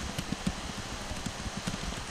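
Irregular, muffled taps of typing on a computer keyboard, over a steady background hiss.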